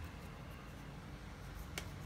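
Fingers handling a small biscuit and its cardboard box: one short sharp click near the end over a faint low hum.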